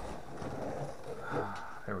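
Faint rustling and scraping of a cardboard shipping box as a wooden-stocked Mauser rifle is slid out of it.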